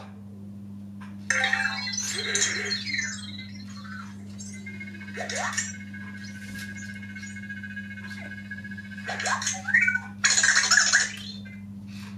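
Anki Vector home robot making its squeaky electronic chirps and the whir of its small tread motors as it drives across the desk. There is a burst of chirps about a second in, a steady whine through the middle and another burst near the end.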